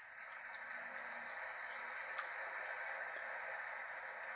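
Audience applauding, a steady even clatter of many hands that swells in at the start, heard thin and narrow through a television's speaker.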